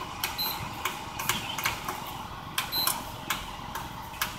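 Buttons pressed on a Pelonis evaporative cooler's control panel: a string of sharp clicks, two of them with a short high beep, over the steady rush of the cooler's fan. The presses are attempts to select its natural mode, which does not work on this unit.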